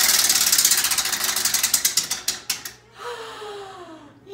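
Spinning prize wheel, its flapper clicking rapidly against the pegs. The clicks slow and space out until the wheel comes to a stop about three seconds in.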